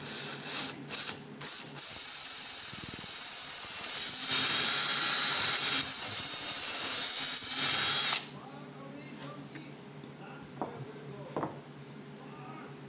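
Handheld cordless drill boring a hole through a wooden spar through a drill-guide block, running for about six seconds with a high-pitched wavering squeal, then stopping suddenly. A few short clicks come before it, and light handling knocks after.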